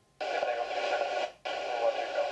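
Air-band radio transmission on the tower frequency, full of static and hard to make out: plausibly the pilot's readback of the takeoff clearance, keyed in two parts with a short break about one and a half seconds in.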